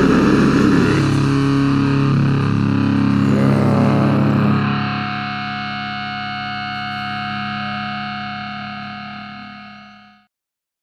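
Loud distorted death metal guitars played live, which stop about halfway through, leaving a sustained distorted guitar chord and steady feedback tones ringing out. These fade away near the end.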